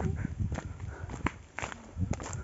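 Footsteps of people walking on a dry dirt trail, a few distinct steps over a low rumble.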